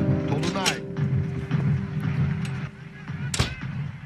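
An interior door banging shut once, sharply, about three and a half seconds in. Faint voices and a steady held music tone run before it, the tone stopping a little past the middle.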